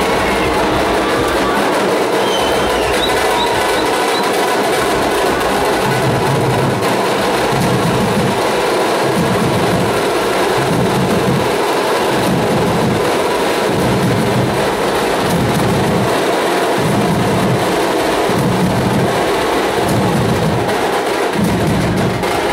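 Loud procession drumming with a heavy beat about once a second over dense, steady noise.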